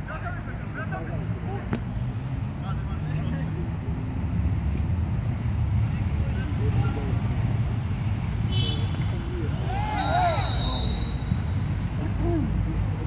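Distant shouts of football players across an outdoor pitch over a steady low rumble, with a louder burst of calling about ten seconds in and a short, high steady tone at the same moment.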